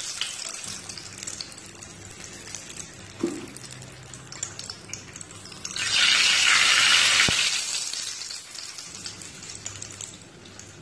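Samosas frying in hot oil in a pan, a steady sizzle that swells into a louder burst of sizzling about six seconds in, lasting nearly two seconds, as they are turned with metal tongs. A couple of light clicks of the tongs against the pan.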